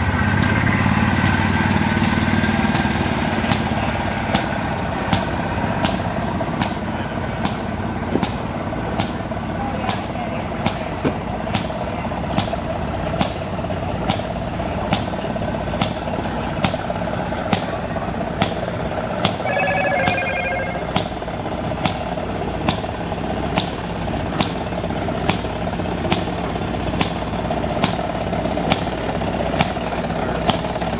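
Antique stationary gas engine popping steadily, about three sharp exhaust pops every two seconds over a running hum. A golf cart motor runs close by in the first few seconds.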